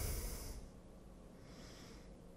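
A person's breath through the nose close to the microphone, a short hiss that fades out about half a second in, followed by quiet room tone.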